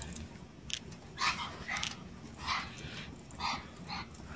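A Brussels Griffon and a Border Terrier play-fighting, with about six short dog vocal bursts spread across the four seconds.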